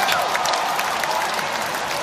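A large audience applauding, dense clapping that tapers off slightly.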